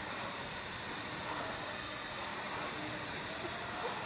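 Indoor rowing machine in use: a steady whooshing hiss of its spinning flywheel, with a few faint short squeaks or whirs from the machine.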